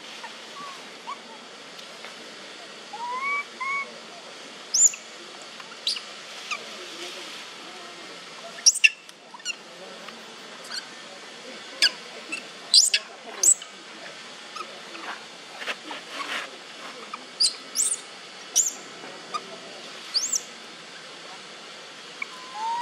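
Long-tailed macaque calls: a pair of short soft coos about three seconds in, then many brief, high, rising squeaks and chirps scattered irregularly through the rest.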